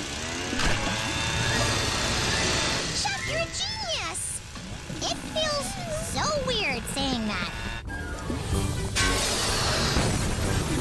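A cartoon leaf blower's small engine runs loudly under background music. From about three seconds in, high swooping cries glide up and down in pitch.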